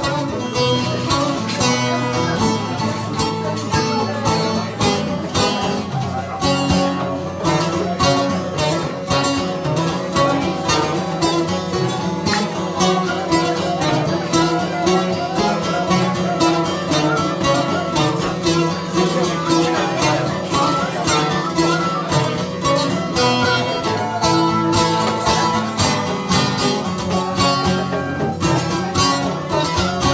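Live instrumental folk music: a bağlama (long-necked Turkish saz) is plucked in quick, continuous runs over a steady goblet-drum rhythm, with a flute playing along.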